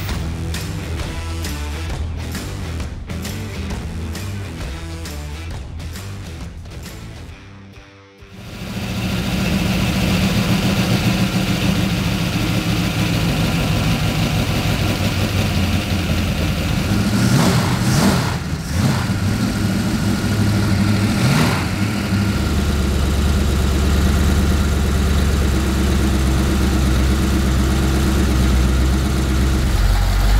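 Background music for the first few seconds, fading out; then a freshly rebuilt Chevrolet 283 small-block V-8 on an engine run stand fires up and runs at its first start. The idle has a slight lope, 'a lump like a little bit of a cam', and the pitch rises and falls briefly a few times past the middle before settling into a steady idle with a heavier low rumble.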